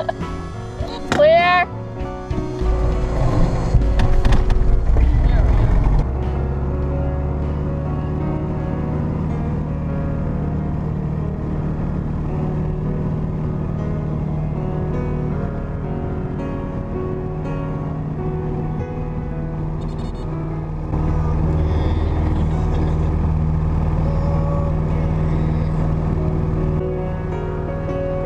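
Background music over the steady low drone of a small propeller plane's engine heard inside the cabin, with a brief voice near the start. The engine drone grows louder about three-quarters of the way through.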